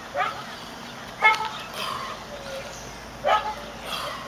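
A dog barking a few short times, the loudest bark just over a second in.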